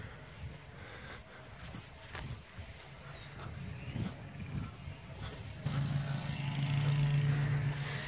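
Low rumble of outdoor air and handling, then, about two-thirds of the way in, a steady engine drone rises and holds for about two seconds before fading.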